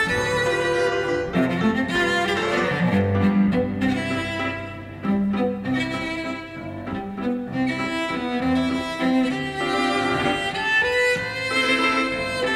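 Cello played with the bow, carrying a melody over piano accompaniment.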